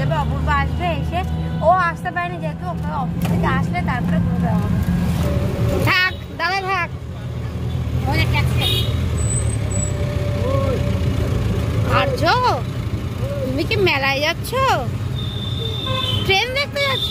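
Steady low road and traffic rumble heard from inside a moving open-sided electric rickshaw, with people talking over it. Near the end there is a short, high, steady horn toot.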